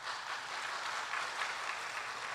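A crowd applauding steadily.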